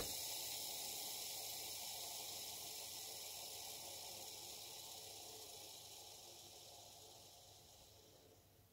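Lego train bogie wheels spinning freely on freshly fitted miniature shielded ball bearings (MR52ZZ), a faint, even whir that fades slowly over about eight seconds as they spin down. The long run-down is the sign of a low-friction bearing fit, a "nice spin".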